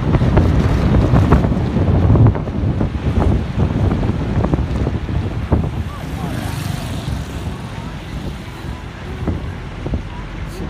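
Wind buffeting the microphone over the rumble of a moving vehicle, loudest in the first few seconds and easing after about five seconds, with scattered short knocks.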